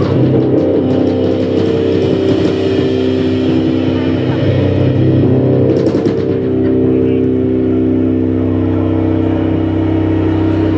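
Live rock band on stage: an amplified, distorted cello and band holding a steady, engine-like droning chord, with a cymbal hit about six seconds in.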